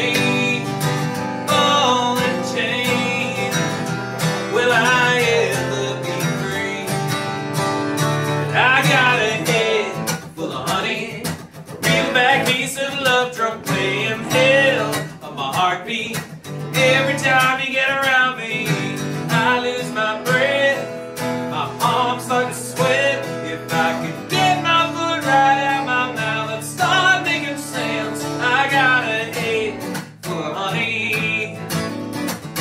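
A man singing a song while strumming an acoustic guitar, the voice carrying over a steady strummed accompaniment.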